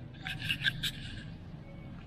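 Grocery store background: a steady low hum with a brief cluster of light clicks and rattles in the first second.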